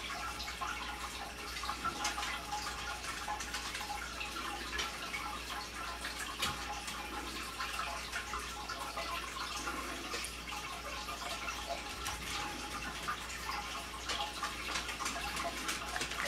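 Steady faint trickling and dripping of water, with small irregular ticks running through it.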